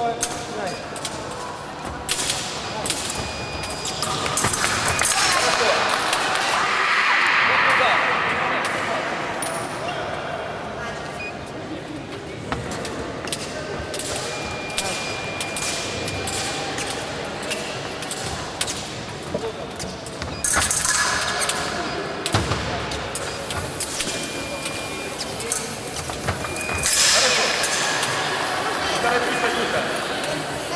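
A fencing bout in a large echoing hall: many sharp clicks and knocks of blades meeting and feet striking the wooden floor, with bursts of voices, and a steady electronic scoring-machine tone for about two seconds roughly halfway through as a touch is scored.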